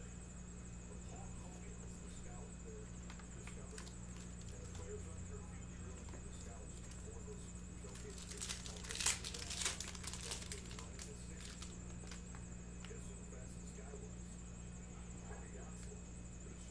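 Clear plastic shrink wrap being torn off a trading-card box and crinkled in the hands, in a short crackly burst about eight to eleven seconds in, over a steady low hum.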